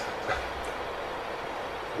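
Room tone in a pause between words: a steady low hum and hiss, with a faint short sound about a third of a second in.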